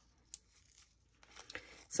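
Faint rustling of lace and paper being handled, with one small click near the start and a few soft rustles near the end.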